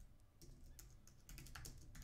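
Faint typing on a computer keyboard: a quick, uneven run of light key clicks as a word is typed.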